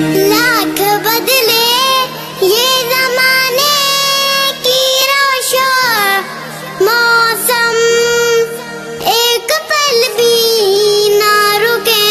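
A high solo voice singing a slow devotional lament with long, gliding ornamented notes, over a steady low drone.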